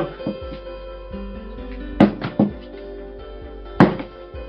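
Background music with sustained notes, over which a stack of paper pages is knocked against a tabletop: a quick cluster of sharp knocks about halfway through and one more near the end.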